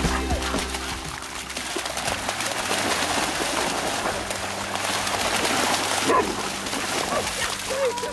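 Several Vizslas splashing as they run through shallow marsh water, a continuous churning of water.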